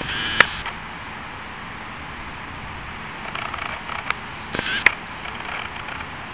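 Steady outdoor background hiss with two sharp clicks, one just after the start and another about five seconds in.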